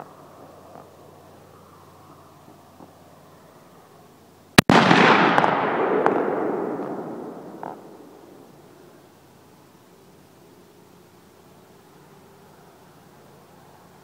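A single 6.5 Creedmoor rifle shot about four and a half seconds in, followed by a long echo that fades away over about three seconds.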